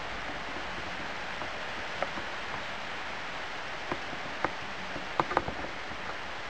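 Steady hiss of background noise with a few short, faint clicks, most of them in the second half.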